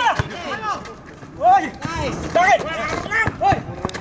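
Short shouted calls and voices from basketball players and people courtside, in brief rising-and-falling bursts about once a second, with a few faint knocks between them.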